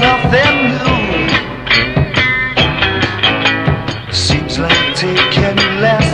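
A 1968 psychedelic garage-rock band recording: electric guitars, bass and drums playing, with no words sung.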